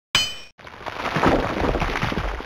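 Added sound effects: a single ringing metallic clang just after the start, then a rumbling, noisy crash that swells up within the next second and stays loud.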